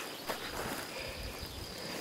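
Quiet outdoor pasture ambience: a steady high-pitched insect drone with soft rustling underneath.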